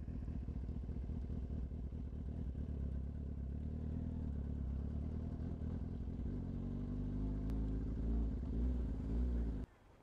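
Sport motorcycle engine running at low revs, its pitch rising and falling a few times near the end, then cutting off suddenly.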